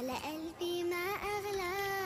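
A child's voice singing a short wordless tune in long held notes that bend slightly in pitch.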